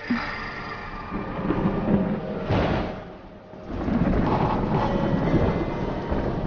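Thunder rumbling over steady rain, easing off briefly about halfway through before swelling again.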